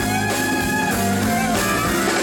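Live band playing an instrumental passage: electric guitar leads with held, bending notes over electric bass and a drum kit.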